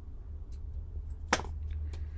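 Small scissors snipping ribbon: one sharp snip about a second and a half in, with a few faint handling clicks around it, over a steady low hum.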